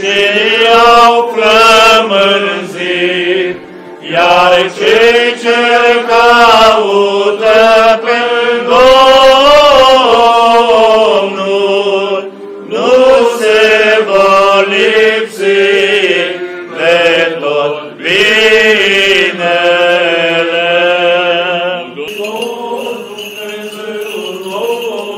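Orthodox liturgical chanting: a melodic sung line in long phrases with brief pauses between them, a little quieter near the end.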